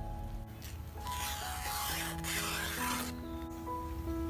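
Background music of steady held notes, with a rustling, rubbing noise from a large banana leaf being handled for about two seconds in the middle.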